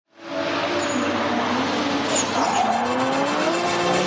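Car engine and tyre-squeal sound effect, fading in quickly and then holding steady, its engine pitch gliding slowly up and down.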